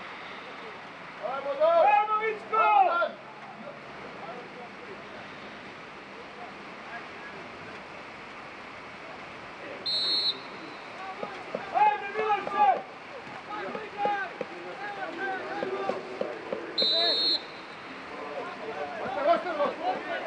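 Players and coaches shouting across an open football pitch, with two short blasts of a referee's whistle, one about ten seconds in and another near seventeen seconds, over a steady background hiss.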